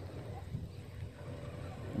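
Quiet, steady low rumble of wind on the microphone, with no distinct events.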